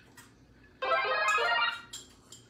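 Speech only: one voice drawing out "okay" on a nearly steady pitch for about a second, starting just under a second in after a brief near-quiet moment.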